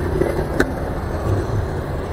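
Motor scooter riding slowly in city traffic: a steady low engine and road rumble with wind on the microphone. There is one short click about half a second in.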